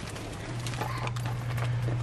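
Handling noise from a phone held against clothing: scattered light taps and rubbing, with a steady low hum from about half a second in.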